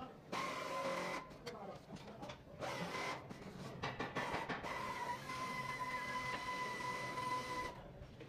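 Ratcheting box-end wrench working a nut off a suspension link's ball stud, with rasping metal-on-metal clicking in short bursts. A steady whine runs through most of the second half and stops just before the end.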